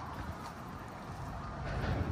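Steady outdoor background noise, mostly a low rumble with no distinct events.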